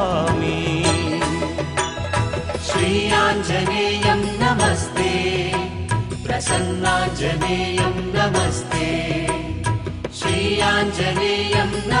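Recorded Hindu devotional music of a hymn to Hanuman, a chant-style passage with melodic instruments over a steady beat between the sung 'namo' lines.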